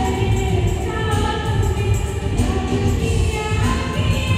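A woman singing into a microphone with a live band of electric guitars and keyboard, amplified in a large hall: held sung notes over a steady beat and a strong bass line.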